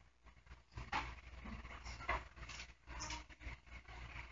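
Quiet room tone in a church hall: a steady low hum with a few faint, brief sounds, the strongest about a second in.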